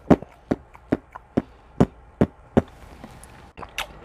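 Close-miked wet chewing of juicy orange segments: regular mouth clicks about two or three a second, stopping about two and a half seconds in.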